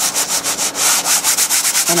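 A sanding block rubbed quickly back and forth over embossed cardstock, a rapid run of rasping strokes. The abrasive scuffs the darker surface off the raised embossed image to show the lighter shade beneath.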